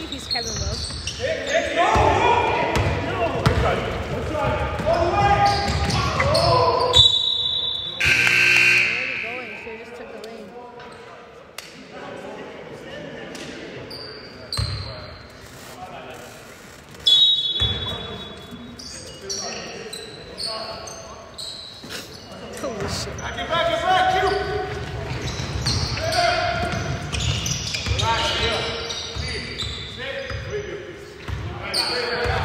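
Basketball bouncing on a hardwood gym floor during live play, repeated sharp knocks, mixed with players' unclear shouts and calls echoing in a large hall.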